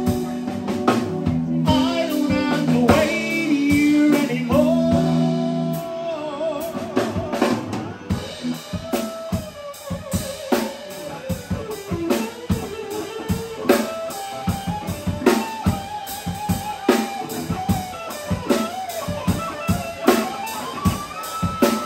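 Live band instrumental: electric guitar over a drum kit keeping a steady beat. Held chord tones fill the first six seconds, then a lead line with pitch bends.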